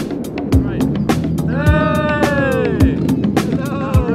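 Upbeat music with a steady beat: a deep kick drum about once a second with quick sharp ticks between. Midway a long call with a falling pitch rides over it for about a second.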